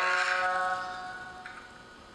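The last chord of a strummed guitar piece ringing out and fading away over about a second and a half.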